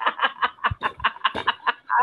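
Hearty laughter heard through a video call: a fast run of short ha-ha bursts, about eight a second.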